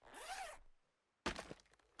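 A faint, brief voice with a pitch that rises then falls, then two short clicks about a second and a half in; otherwise near silence.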